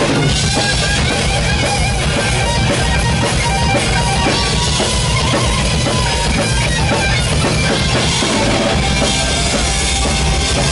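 Thrash metal band playing live and loud: distorted electric guitar over a drum kit with steady bass drum.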